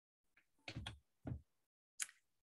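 Near silence broken by a few faint, soft knocks: two close together just under a second in, another a moment later, and one more at the end.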